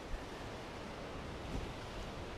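Ocean surf breaking on a rocky shore, a steady wash of noise, with wind gusting on the microphone in low rumbles.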